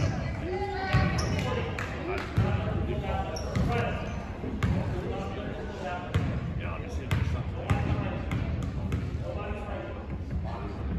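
A basketball bouncing on a hardwood gym floor, a low thud every second and a half or so, under indistinct voices of people talking in the gym.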